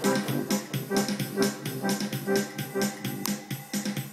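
Casio electronic keyboard playing music with a sustained organ-like tone over a steady beat, about two beats a second.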